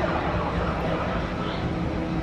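Arcade ambience: a steady wash of noise with faint electronic tones from the running video game machines.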